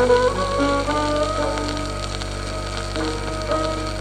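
Violin and piano playing a Hindustani classical melody with tabla, a few quick notes giving way to longer held notes, heard through the steady crackle and hiss of a 1940s 78 rpm shellac disc.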